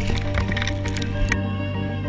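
Ice axe picks striking and breaking into rime ice, several sharp cracks and crunches, over background music with sustained notes.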